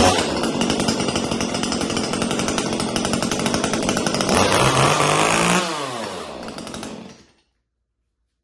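A Stihl MS 150 TC top-handle chainsaw's small two-stroke engine fires up and runs at high speed. Its pitch rises briefly about four and a half seconds in, then it winds down and stops about seven seconds in as the stop switch is pushed forward.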